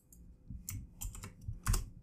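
Computer keyboard keys pressed about five times at irregular spacing in the second half, the last press the loudest.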